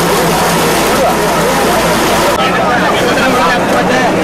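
An excavator's engine runs steadily under the mixed voices of a crowd of people. The low engine sound drops away about two and a half seconds in, and the voices carry on.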